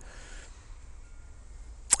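Quiet room tone: a faint steady hiss and low hum, with a man's voice starting again just before the end.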